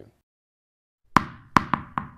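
Cartoon pop or bounce sound effects: four quick hits, each with a short ringing tail, starting about a second in after a near-silent pause.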